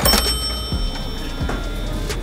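A bright chime-like ding at the very start that rings out and fades over about a second, over background music with a light, even beat.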